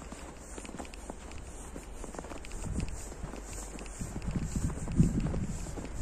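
Footsteps crunching on snow while walking, a steady run of short crunches. A low rumble on the microphone builds up in the second half.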